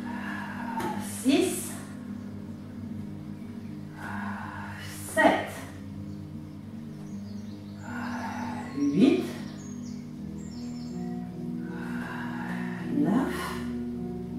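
Soft background music of held, sustained tones that change chord about ten seconds in. Over it, four short, forceful breaths out with some voice, about every four seconds, from a woman working through alternating leg lifts in a plank.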